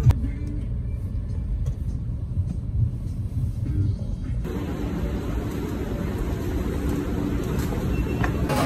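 Low, steady rumble inside a car's cabin while riding in traffic. About four and a half seconds in, the sound changes abruptly to a fuller rumble with more hiss.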